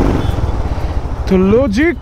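Motorcycle engine running at low riding speed, a rapid low pulsing under a rush of wind and road noise on the rider's microphone; a man starts talking about a second and a half in.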